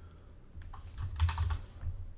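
Keys being pressed on a computer keyboard: a quick cluster of clacks about a second in, over a low steady hum.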